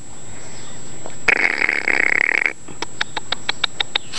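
A Newfoundland puppy snuffling close to the microphone: a raspy, breathy noise lasting about a second, starting about a second in. It is followed by a quick run of light clicks, about seven a second.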